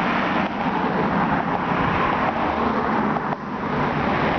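Steady road traffic noise: cars passing on the adjacent road, a continuous rush of tyres and engines.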